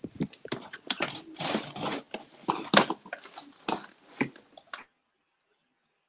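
Handling noise: irregular rustling, clicks and knocks of a device being fiddled with close to its microphone. It cuts off suddenly about five seconds in.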